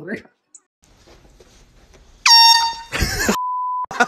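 A handheld air horn gives one loud, high blast of a bit under a second, about two seconds in. It is followed by a brief noisy burst and a short, flat, steady beep.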